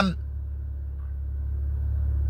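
A steady low hum during a pause in a man's talk; the tail of a spoken word ends just at the start.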